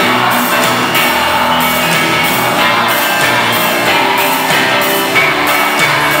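Live pop-rock band playing with singing, loud and steady with a regular beat.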